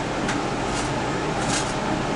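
Steady fan-like background hiss, with a short faint scrape about one and a half seconds in as a rubber squeegee wipes excess conductive ink off a circuit board.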